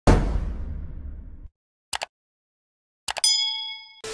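Edited intro sound effects: a loud low impact at the start that fades away over about a second and a half, two quick clicks near the two-second mark, then a metallic ding that rings out and dies away.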